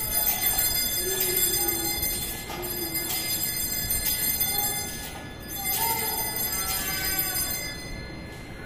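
Altar bells rung in repeated shakes as the consecrated host is elevated, a cluster of high, lingering ringing tones marking the consecration. A soft musical line sounds beneath the bells.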